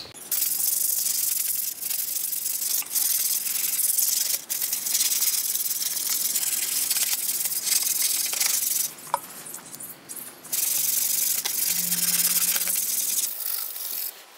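Tap water running and splashing onto a rusty steel motorcycle carrier and a concrete basin floor, a steady hiss. It breaks off briefly a few times, with a longer break about nine seconds in, and stops shortly before the end.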